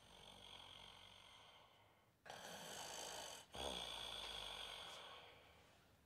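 Faint, slow breathing like soft snoring, in three long breaths, the second and third louder.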